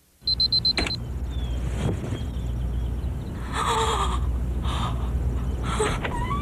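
A rapid high electronic beeping for about half a second, then a steady low hum, with two short voice-like sounds, the second near the end.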